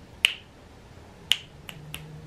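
Finger snaps: a few short, sharp snaps, two loud ones about a second apart, then fainter ones near the end.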